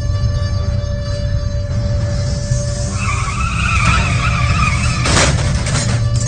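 Car tyres screeching for about two seconds, then a loud crash of a car accident, over a low, tense music drone.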